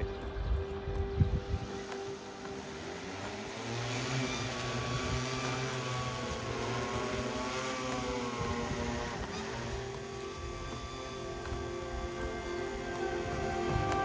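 Large multi-rotor agricultural spraying drone's rotors spinning up and lifting off, a whirring hum whose pitch wavers as it climbs, building from about four seconds in. Background music plays along.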